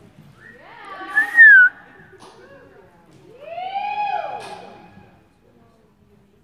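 A loud, wavering human whistle about a second in, then a long rising-and-falling 'whoo' shout: spectators cheering a reining run.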